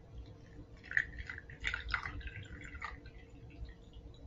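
Water poured from small glass beakers onto gravel and coarse sand in perforated plastic cups, trickling and splashing irregularly from about a second in until about three seconds in.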